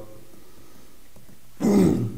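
Faint room tone, then near the end a man's short grunt with a falling pitch.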